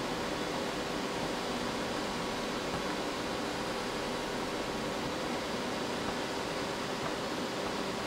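Computer case fans running: a steady, even whooshing hiss with a faint hum in it.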